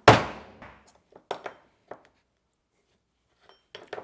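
A hammer strikes a steel drift punch once, ringing briefly, to drive a gold bullet pin out of an EC5 connector's plastic housing. A few small clicks and taps follow.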